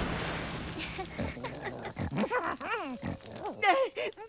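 Wordless cartoon character voice: a run of short chuckles and grunts, each bending up and down in pitch, starting about a second in. Before them comes a soft rush of noise.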